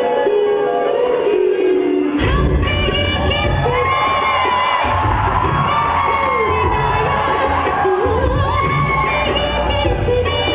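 Recorded dance music played loud over a hall's speakers, with an audience cheering and shouting over it. The melody runs alone at first, and a deep bass beat comes in about two seconds in.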